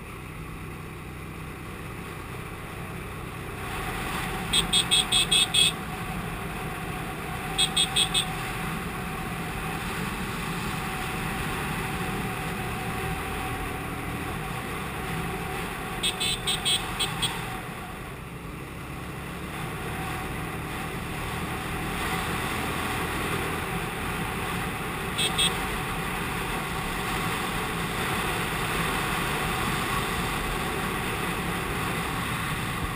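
TVS Apache RTR 180 single-cylinder motorcycle running steadily at road speed. Its horn is sounded in quick runs of short beeps: about six beeps around five seconds in, three near eight seconds, five around sixteen seconds and two near twenty-five seconds.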